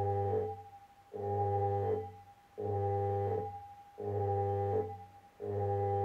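Homemade dyno's electromagnetic brake coils, energised from their power supply, humming a steady low drone of several tones at once that cuts in and out repeatedly, each burst lasting about a second and a half with short silent gaps. The speaker calls it really cool.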